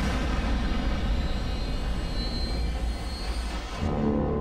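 Cinematic sound effect under a film's title logo: a loud, steady rushing noise with a deep rumble that cuts off near the end.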